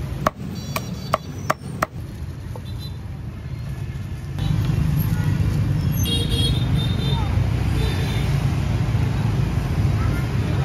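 Cleaver chopping roast goose on a heavy chopping block, five quick sharp strikes in the first two seconds. From about four seconds in, a steady low rumble of street traffic takes over.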